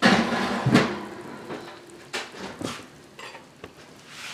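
Clatter of an enamelled cast iron skillet and utensils on a stovetop: a loud knock at the start, then a few lighter knocks and scrapes that fade away.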